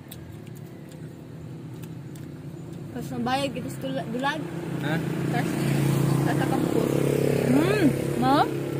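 A motor vehicle's engine running close by, growing louder through the second half and holding there, with voices talking over it.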